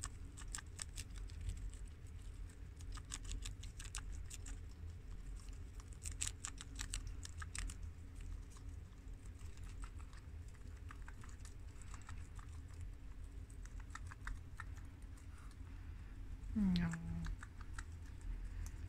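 Guinea pigs biting and chewing crisp romaine lettuce up close: a quick, irregular run of crunchy clicks, thickest in the first half and thinning later. Near the end a person's voice makes a short, falling sound.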